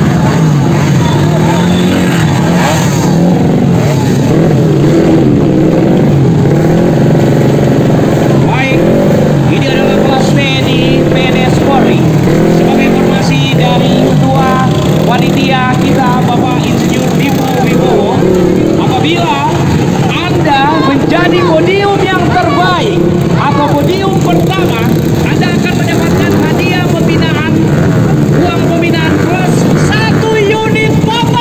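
Several dirt bike engines running and revving up and down together, the pitch rising and falling continuously, with voices mixed in.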